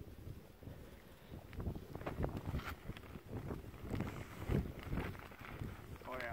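Wind buffeting the microphone, a fairly faint low rumble that comes and goes in uneven gusts.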